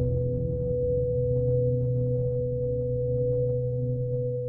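Ambient background music made of sustained, steady droning tones over a low hum.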